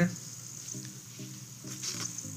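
A quiet pause: faint steady background hiss with a few brief, faint hums.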